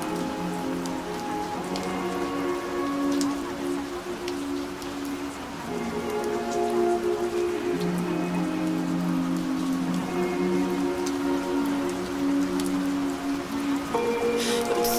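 Steady rain falling, with light pattering crackles, under soft sustained synth chords that shift slowly every second or two.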